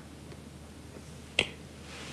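A single short, sharp click about two-thirds of the way through, over quiet room tone.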